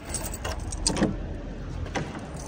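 Footsteps with a light jingle and clicking of keys at a street door, over a steady low rumble.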